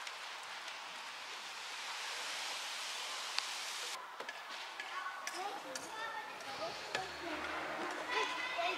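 Outdoor playground ambience. A steady hiss runs for the first half and cuts off abruptly. Faint distant voices and a few light taps follow.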